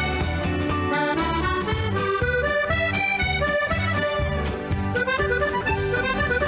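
Accordion playing a dance tune: a quick melody of short notes over a steady, evenly pulsing bass-and-chord beat.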